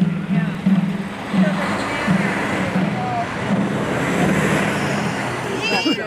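A low drum beaten at a steady walking pace, about one to two beats a second, over the murmur of a marching crowd. The beats stop near the end and a woman's voice begins.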